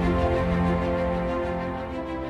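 Background music: sustained, steady instrumental tones under the video's opening.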